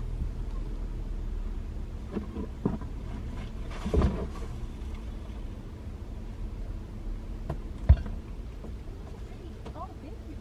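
Inside a parked SUV: a steady low hum, with several dull thumps and knocks from the back of the vehicle as shopping is loaded into the cargo area. The loudest thump comes about four seconds in, and a sharp knock comes near eight seconds.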